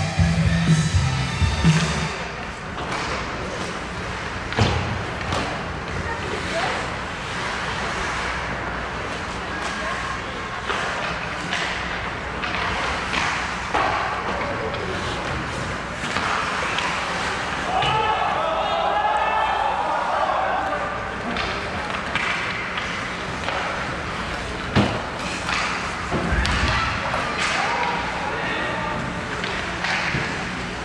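Ice hockey game sounds in a rink: scattered sharp knocks of sticks and puck and thuds against the boards, under the voices and shouts of spectators and players. Arena music plays at the start and stops about two seconds in.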